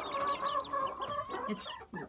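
A brood of young chickens peeping and chirping, many short high calls overlapping.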